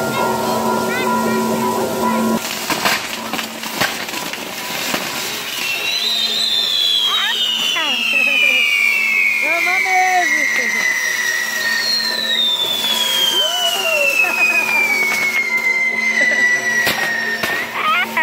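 Fireworks on a burning pyrotechnic castillo tower: crackles and pops, then two long whistles that each fall steadily in pitch over about six seconds, the first starting about six seconds in and the second following just as it ends.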